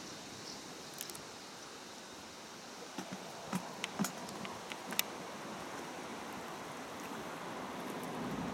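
Steady outdoor background hiss by open water, with a handful of faint sharp clicks between about three and five seconds in.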